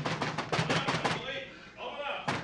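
Rapid, loud knocking on a door, about eight quick blows in the first second, then a short pause: the police pounding to be let in.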